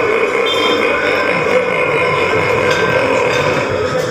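A long, unbroken burp-like vocal sound, held at a steady pitch without a pause for breath.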